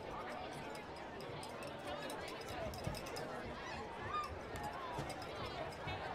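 Indistinct chatter of many voices from spectators and players along the sideline of an outdoor football game, with a few low knocks, the loudest a little before halfway.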